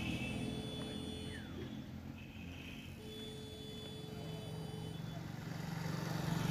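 Faint low background rumble, with thin steady tones that drop out and return partway through.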